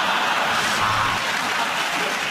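Studio audience laughing and applauding, a steady loud mass of clapping and laughter.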